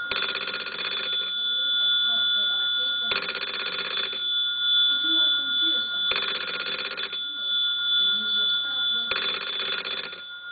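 Black telephone's bell ringing in four bursts of about a second each, one every three seconds. A thin, steady high tone runs under the rings throughout.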